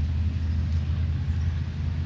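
A motor vehicle's engine running with a steady low rumble.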